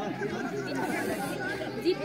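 Spectators' chatter: several voices talking over one another, with one voice louder near the end.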